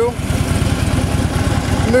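Harley-Davidson Twin-Cooled 103 High Output V-twin of a 2014 Electra Glide Ultra Limited idling in neutral, a steady low, even pulsing beat.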